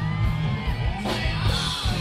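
Live rock band playing loud, with drums, electric guitar and bass, and a singer yelling over it.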